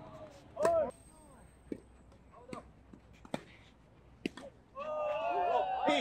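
Tennis rally in a doubles match: sharp racket strikes on the ball, several in a row roughly a second apart. A player gives a short loud shout early on, and a long shout near the end as the point finishes, running into "come on".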